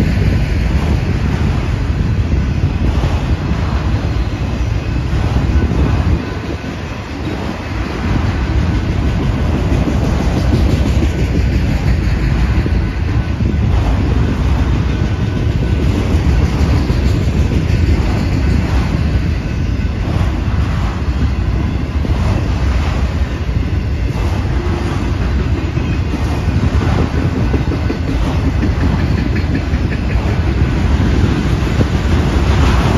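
Freight train of enclosed autorack cars rolling past close by: a loud, steady rumble of steel wheels on rail with repeated clicks as the wheels cross rail joints. The rumble drops for a moment about six seconds in, then carries on.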